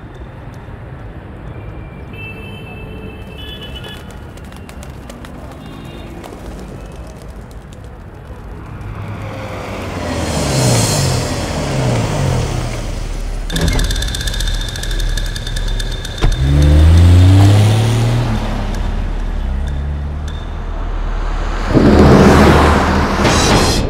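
An SUV's engine drives past, rising in pitch as it accelerates, twice building up loudly in the second half.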